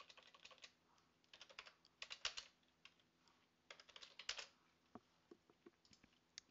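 Faint typing on a computer keyboard in short runs of keystrokes, then a few lighter, separate clicks near the end.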